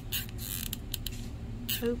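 Hot glue gun's trigger and feed mechanism creaking as glue is squeezed out onto wood, in a short burst just after the start and another near the end.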